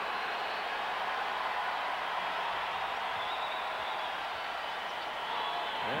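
Large basketball-arena crowd making a steady roar of cheering and voices.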